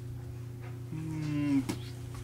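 A person's low, drawn-out vocal sound, rising in loudness for under a second, cut off by a short soft thump.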